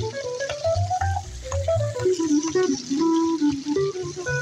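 Electric guitar and plucked upright double bass playing an instrumental jazz passage, with no vocal: the guitar carries a moving melodic line over the bass notes.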